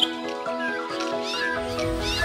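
Music with held notes at several pitches, and short high, rising-and-falling glides sounding over it in the second half.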